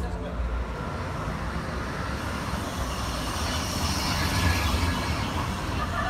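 Street traffic noise: a steady low rumble and hiss of a vehicle going by, swelling about four seconds in.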